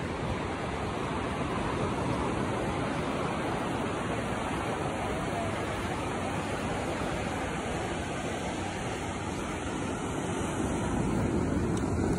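Steady wash of ocean surf breaking on a sandy beach, an even rushing noise with no distinct breaks.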